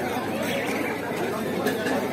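Background chatter of several people talking at once, with no one voice standing out.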